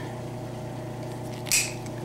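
A single short, sharp snip about one and a half seconds in: the loose tail of a nylon zip tie being cut off. It sounds over a steady low hum.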